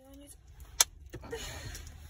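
Low rumble of a car cabin with the engine running. A sharp click comes just under a second in, with a smaller one soon after, then rustling handling noise.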